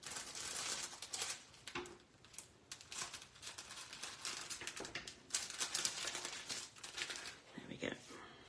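Crafting materials being handled off-camera: irregular crinkling and rustling, as of sheets and packaging being sorted through by hand.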